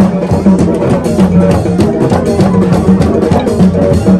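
Gagá music: drums and hand percussion keeping a fast, steady beat under a short low note figure repeated over and over.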